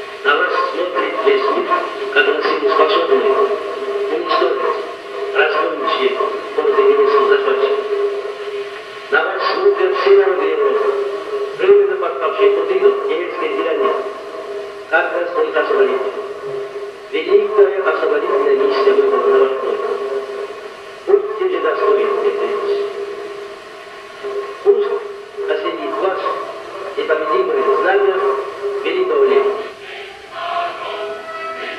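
Archival recording of Joseph Stalin's November 1941 Red Square speech: a man speaking Russian in phrases separated by short pauses, with a steady tone running underneath from the old soundtrack.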